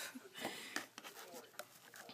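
A short breathy laugh, then a few soft clicks and light rustling as rings in a jewelry display box are handled.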